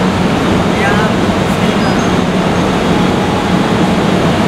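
EF64 1000-series electric locomotive standing at the platform with its machinery running: a steady low hum under an even rumble, with people talking nearby.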